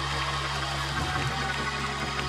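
A low chord held steadily on a church keyboard, playing softly under the pause in the preaching.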